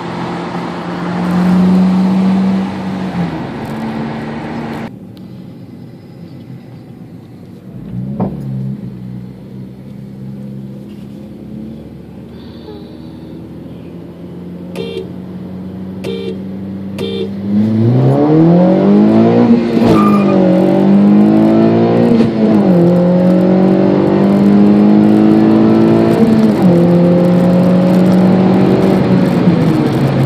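Honda Civic Si's 2.4-litre four-cylinder heard from inside the cabin: running steadily, dropping suddenly quieter about five seconds in, then about eighteen seconds in pulling at full throttle, the revs climbing and dipping briefly at each upshift.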